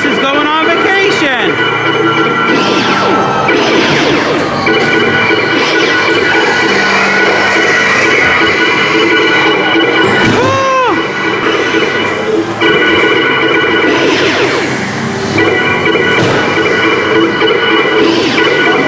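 A dark ride's onboard soundtrack: spooky music with recorded voices and sound effects, including a tone that swoops up and back down about ten seconds in.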